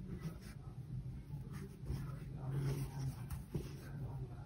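Faint rustling and scratching of yarn drawn through the stitches and over a metal crochet hook while a bubble stitch is worked, with a low steady hum underneath.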